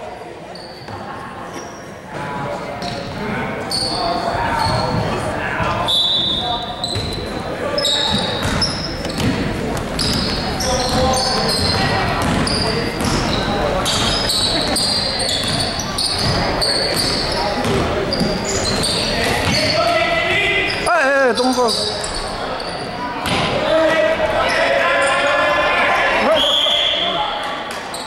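A youth basketball game in an echoing gym: the ball bouncing on the hardwood and sneakers squeaking, with spectators talking and calling out. A referee's whistle sounds near the end, calling a jump ball.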